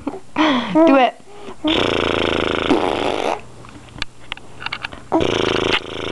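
A baby vocalizing: short squeals that slide up and down in pitch in the first second, then a long buzzing, raspy noise lasting about a second and a half, and another one starting near the end.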